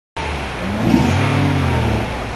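Mazda MX-5 Miata's inline-four engine running with the car held stationary, its revs rising a little about half a second in and easing back.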